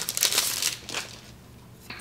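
Packaging of a fridge magnet crinkling and rustling as it is opened by hand, dying away about a second in.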